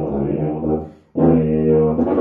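Solo tuba playing held notes; the phrase tapers off about a second in, a short breath, then the next phrase starts strongly on a sustained note.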